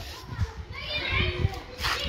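Children's voices chattering in the street, with high-pitched calls about a second in, over a few low knocks.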